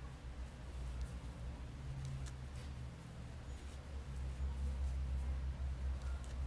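A crochet hook and cotton string worked by hand: a few faint soft ticks and rustles over a steady low hum of room noise.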